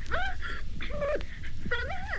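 A run of short, high whining cries, about two a second, each rising and then falling in pitch, heard on the recording's intro just before the band starts.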